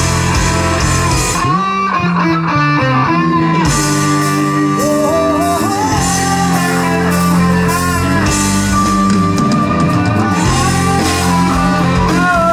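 Rock band playing live in an instrumental passage: an electric guitar plays a melodic line with bent notes over bass guitar and drum kit. About a second and a half in, the drums and cymbals stop for about two seconds, then the full band comes back in.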